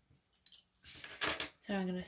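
Light clinking and rustling as hands handle fabric held with plastic sewing clips on a table, with a louder rustle in the middle; a woman starts speaking near the end.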